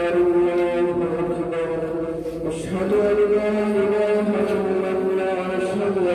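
A man's voice chanting Islamic prayer with long, drawn-out held notes. There is a short break about two and a half seconds in, after which the pitch steps up.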